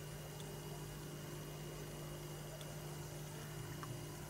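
Faint steady electrical hum with a thin high-pitched whine above it: room tone of an electronics bench, with nothing happening.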